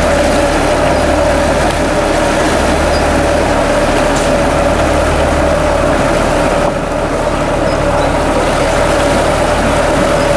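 A canal cruiser's engine idling steadily with a constant hum, mixed with water rushing and churning into the lock chamber through the open sluices as the lock fills.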